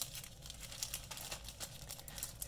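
Clear plastic packaging bags crinkling as they are handled, in a scatter of irregular small crackles.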